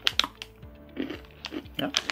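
Crinkling of a plastic cookie wrapper being handled, a few sharp crackles in quick succession just after the start and again near the end.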